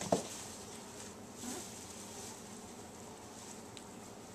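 A border collie puppy gives a short squeak that drops sharply in pitch, then a fainter whimper about a second and a half later, over a steady faint hiss.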